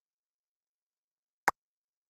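A single short, sharp click about one and a half seconds in, otherwise silence.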